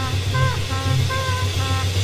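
Jazz recording: trumpet playing short phrases of notes with small pitch bends over a pulsing low bass figure that repeats a few times a second.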